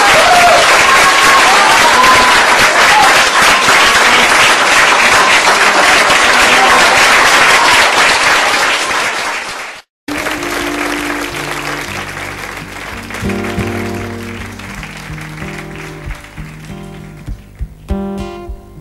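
Live concert audience applauding and cheering at the end of a song, the applause fading away. After a brief cut to silence about ten seconds in, the next song begins with acoustic guitar notes.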